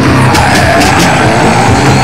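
Loud crossover/groove metal music: electric bass under pounding drums with cymbal crashes. A high note slides down and back up through it.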